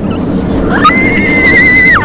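A person screaming on an amusement-park ride: one long, high-pitched scream that starts just under a second in and is held steady until it breaks off at the end, over a steady rushing noise.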